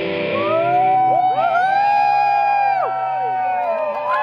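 Live rock band's electric guitars holding long notes that bend and slide up and down in pitch, while the drums and low parts fall away: the song winding down to its end.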